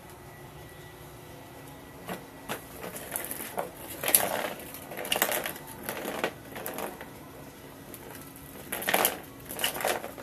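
Irregular bursts of crinkly rustling and crackling, starting about two seconds in and loudest around the middle and near the end, over a faint steady hum.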